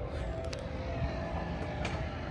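Outdoor ambience: a steady low rumble, with two faint clicks, one about half a second in and one near the end.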